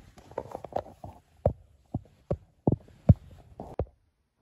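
A run of short, muffled thumps, unevenly spaced at about two a second, with the loudest about three seconds in.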